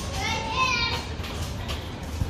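A young child's short, high-pitched wordless call, rising slightly, over a steady low rumble.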